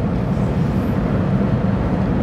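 Steady driving noise inside a moving car's cabin: a low rumble with an even hiss above it.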